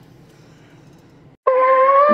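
Faint steady road noise inside a moving car, then about one and a half seconds in background music starts suddenly with a loud, held, slightly wavering melody note.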